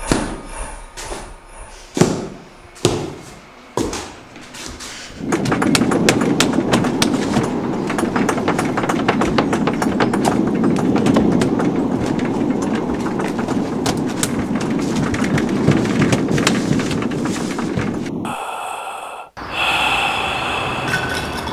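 A few separate thumps, then a tall wooden gate being shaken and pounded by hands: a long, loud, rattling clatter of rapid knocks that cuts off suddenly near the end.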